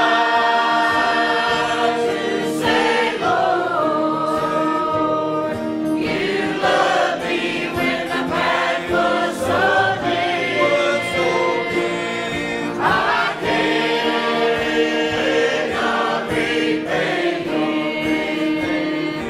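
A group of voices singing a hymn together, with long held notes that move to new pitches every second or two.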